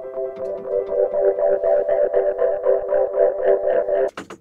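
Logic Pro X software instruments playing together: the 'Spirit' gated-synth patch pulses rapidly and evenly, about five times a second, over a held chord, layered with the Yamaha Grand Piano. The music cuts off suddenly at the end.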